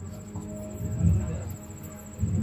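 Quiet stretch of live folk dance music, with a few low thuds about a second in. A steady, pulsing, high-pitched cricket trill sounds over it.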